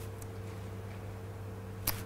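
Quiet room tone with a steady low hum. A short sharp noise comes just before the end.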